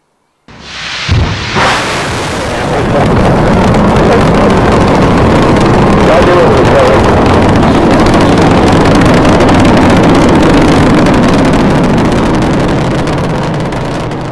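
Two sharp bangs, then a loud, steady rushing noise like a large engine or blast, tapering slightly near the end.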